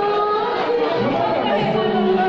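A congregation praying aloud all at once, many voices overlapping in a steady din.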